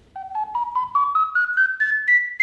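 A ten-hole ocarina plays a rising scale of about ten short notes, each a step higher, the notes climbing in pitch as more finger holes are opened.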